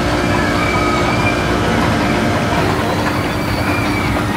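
Steady, loud fairground din: a dense rumble with a constant machine hum running under it and faint wavering higher tones drifting through.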